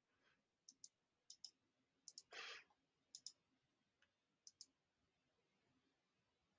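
Faint computer mouse clicks: about five pairs, each a press and release close together, spread a second or so apart, with a short soft rush of breath-like noise about two and a half seconds in.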